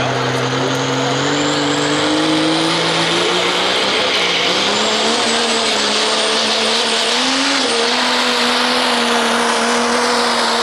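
Diesel pickup truck's engine run hard under full load as it drags a pulling sled, its pitch climbing over the first five seconds and then holding steady with a brief rise near the end. A high whistle climbs alongside the engine note.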